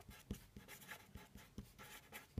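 Faint scratching of a pen writing on paper, with a series of small ticks as the pen strokes out a word.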